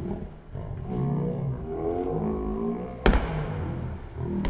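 Men's voices shouting drawn-out calls during a volleyball rally. About three seconds in comes a single sharp smack, the loudest sound, typical of a hand striking the volleyball.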